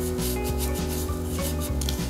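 Gloved hands rubbing salt into the belly cavity of a whole red sea bream, a repeated gritty scraping and rubbing. Background music with a steady beat plays underneath.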